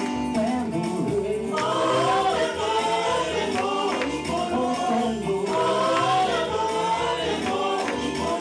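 Choir and congregation singing a gospel-style hymn with instrumental accompaniment and a steady beat.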